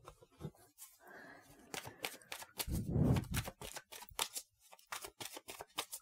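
A deck of tarot cards being handled and shuffled by hand: a quiet run of quick card clicks and flicks, with a heavier rustle of the cards about three seconds in.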